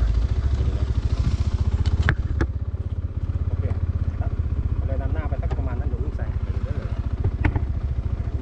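A small engine running steadily at idle, like a motorcycle, with a few sharp clicks.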